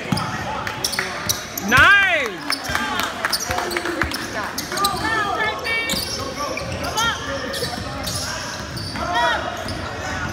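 Basketball game in a gym: a ball bouncing and sneakers on the court, under scattered spectator voices that echo in the hall. A loud shout about two seconds in, with shorter calls later.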